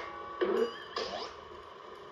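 Cartoon crash sound effect played through a TV speaker: a clattering, ringing crash with fresh hits about half a second and a second in.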